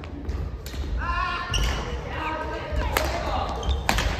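Badminton rally in a sports hall: racket strings hitting the shuttlecock with sharp cracks, three or four of them about a second apart, ringing in the large hall.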